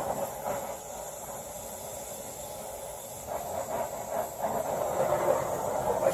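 Oxyacetylene cutting torch flame hissing steadily as it heats a steel piece red-hot for bending, growing louder about three seconds in.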